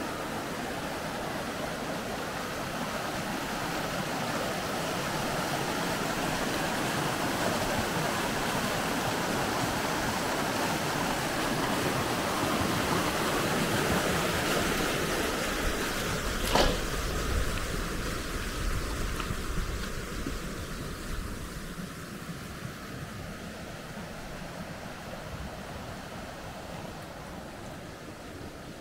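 Creek water rushing and splashing through a pile of large rip-rap rocks: a steady rushing noise that swells a little towards the middle and then fades over the last third. One sharp click a little past halfway.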